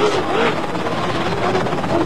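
Helicopter rotor and engine noise, steady throughout.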